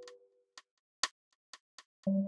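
Intro background music thins out: a held synth chord fades away in the first half second, leaving a few sparse, soft ticks, the sharpest about a second in.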